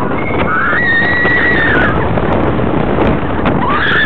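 Wooden roller coaster train rattling and rumbling along the track, with wind rushing over the microphone. Over it a rider lets out one long, held scream in the first half, and another scream starts near the end.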